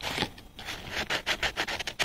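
Fine-grit (P120) sandpaper rubbed by hand over the copper commutator segments of a starter motor armature, in quick short scraping strokes, several a second, with a brief pause about half a second in. The sanding cleans residue off the commutator bars so that resistance readings come out smooth.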